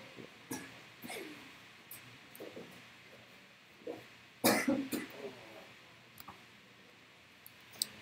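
A single cough about halfway through, short and loud, in a room that is otherwise quiet apart from a few faint scattered noises.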